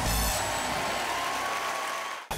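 Studio audience applauding over the show's break music.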